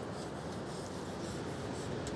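Pen drawing lines on dyed cloth, a soft scratching rub of the tip over the fabric, over a steady low background noise.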